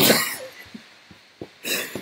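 Two men laughing under their breath: a breathy burst of laughter at the start, a few faint stifled pulses, then another burst of breath near the end.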